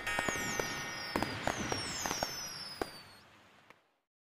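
Fireworks sound effect: several whistles falling in pitch with sharp crackling pops, the whole thing fading out to silence just before the end.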